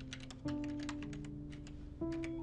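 Rapid computer-keyboard typing, a quick run of key clicks, over held notes of soft background music that change to a new chord about halfway through.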